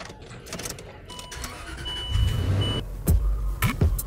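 A car engine starting and running with a low rumble that builds about halfway through, under a steady high electronic tone and a few knocks near the end.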